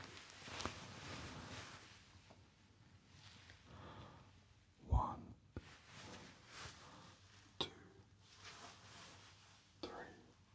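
Soft whispering close beside the microphone, a whispered hearing test, with a sudden low thump about halfway through and a sharp click a couple of seconds later.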